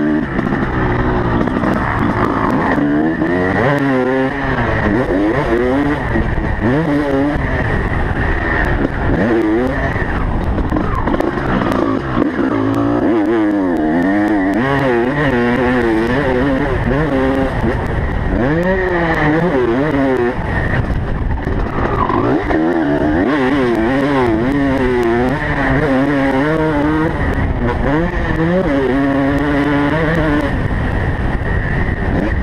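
Motocross bike engine heard from on board, revving hard and backing off over and over, its pitch climbing and dropping every second or two as the rider accelerates, shifts and slows around a dirt track.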